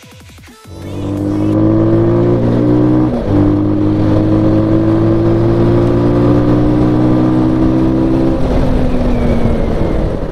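Motorcycle engine pulling hard under acceleration. Its pitch climbs steadily, drops sharply about three seconds in as it shifts up a gear, and climbs again before easing off near the end.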